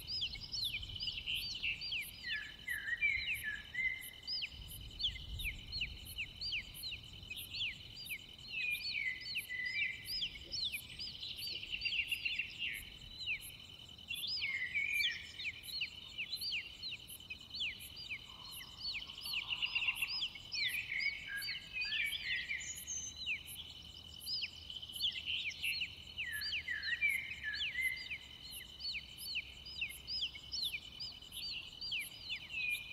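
Nature ambience of many small birds chirping in quick, falling calls over a steady high insect trill.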